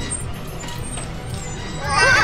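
Crane engine running with a low, steady rumble as it lifts a concrete pipe, a cartoon sound effect.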